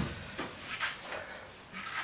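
A cordless drill handled on a wooden workbench: the tail of a knock as it is set down on the board, then a few faint plastic clicks and rubs.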